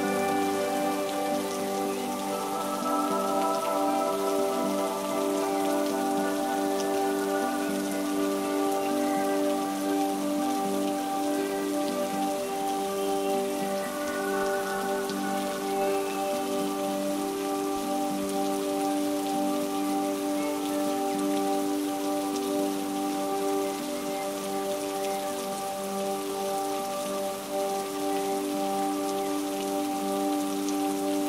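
Steady rain falling, a dense even patter of drops, with soft ambient music of long held notes underneath.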